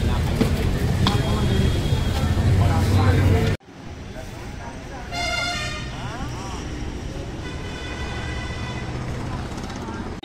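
Outdoor ambience of a crowd's background voices and road traffic; after a sudden cut about three and a half seconds in it turns quieter, and a vehicle horn sounds in the quieter part.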